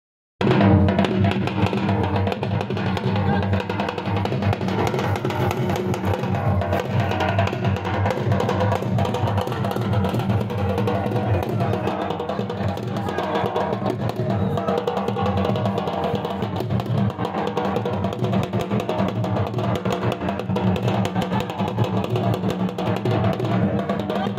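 Dhol drums beating a steady Attan dance rhythm, with a sustained melody line over them. The music starts about half a second in and carries on without a break.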